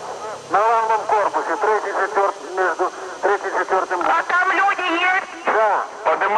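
Speech only: men's voices talking quickly and urgently, partly with the sound of a radio call.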